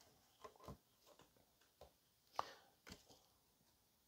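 Near silence with a few faint, short taps and clicks of tarot cards being handled and drawn from the deck, the loudest about halfway through.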